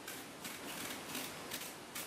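Kitchen knife peeling long strips of skin off a large eggplant: faint, repeated slicing strokes through the skin.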